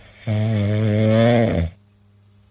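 Sleeping cat snoring: one long pitched snore lasting about a second and a half, rising slightly in pitch.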